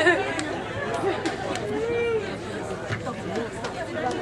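Indistinct chatter: several people on stage and in the audience talking at once, with no single clear voice.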